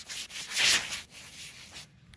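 Scratchy rubbing noise close to the microphone, loudest about half a second in and cutting off sharply near the end, like something brushing against the recording phone or gloved fingers rubbing on skin right beside it.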